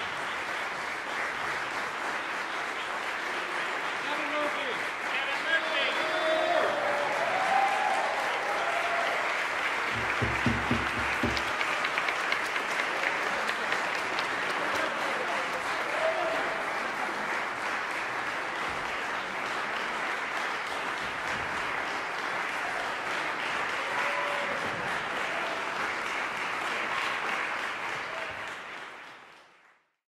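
Audience applauding steadily, fading out near the end, with a few voices heard over the clapping.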